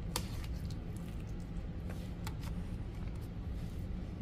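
Metal spoon stirring wet cornbread dressing in a bowl: soft squishing with a few light clicks of the spoon against the bowl, over a steady low hum.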